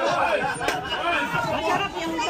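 Overlapping conversation of many diners in a busy restaurant, with a single sharp click, such as a utensil or glass being set down, about a third of the way in.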